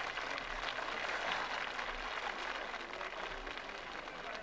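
Steady splashing of swimmers in a pool, with faint voices in the background.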